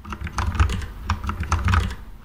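Computer keyboard being typed on: a quick, uneven run of keystrokes as Emacs shortcut keys are pressed.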